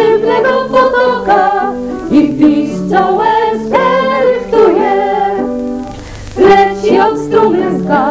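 A small group of women singing a folk-style song in harmony, with piano accompaniment, in long held phrases.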